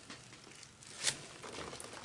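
Quiet handling noise as a gloved hand grips and moves a wet, paint-covered canvas, with one brief soft rustle about a second in.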